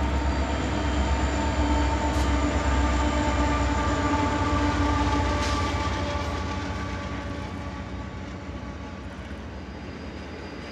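Diesel locomotives of a freight train running past, a deep steady rumble with an engine drone. After about six seconds it fades as the double-stack container cars follow, leaving the rumble of their wheels on the rails.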